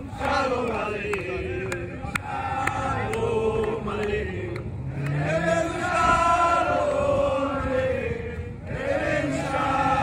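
A crowd of men's and women's voices chanting and singing together in unison, with hand claps in time during the first few seconds.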